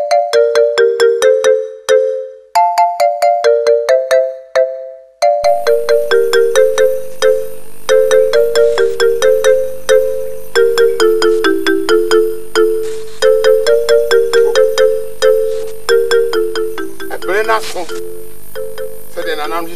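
A melody of short, chime-like electronic notes played in repeating phrases, like a phone ringtone. A low steady hum joins it about five seconds in.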